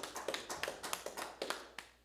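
A few people clapping their hands, quick irregular claps that thin out and stop near the end.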